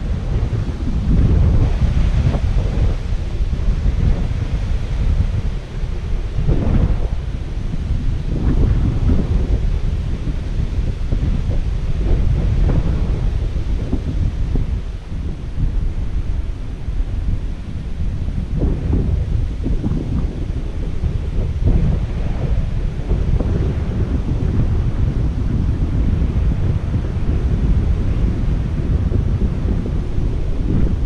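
Strong gusty wind buffeting the microphone: a loud, low rumble that swells and drops with each gust.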